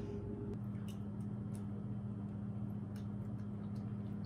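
Quiet room with a steady low electrical hum and a few faint, scattered soft ticks.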